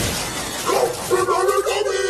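A sudden crash-bang as an onstage keyboard blows up in smoke and sparks, with a hissing noise trailing after it. About half a second in, a warbling, speech-like novelty-character voice starts.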